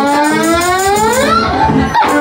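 Live Ethiopian traditional band music with washint flute, lyre and conga drums. A long note with many overtones rises slowly in pitch over about a second and a half, over a repeating low pulse.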